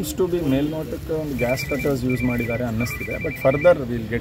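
A phone ringtone of rapid high electronic beeps sounds in three short bursts starting about a second and a half in, under a man's speech.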